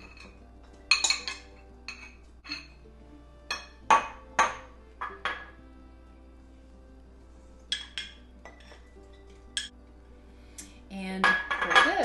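A utensil clinking and tapping against a glass bowl and a glass mason jar as cut cucumber and red onion are spooned into the jar: irregular sharp clinks, a few at a time, with pauses between.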